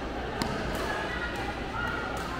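A badminton racket striking a shuttlecock once, a sharp crack about half a second in, over the background chatter of people in a hall.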